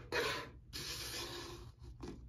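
Rubbing and scraping on a wooden desktop as a small artificial pumpkin is slid into place. There are two stretches, a short one and then a longer one.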